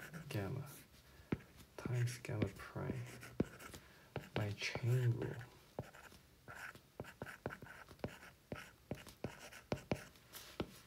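A stylus tapping and scratching on a tablet's glass screen as handwritten equations are written, in sharp little clicks that run throughout. A voice speaks quietly over the first half.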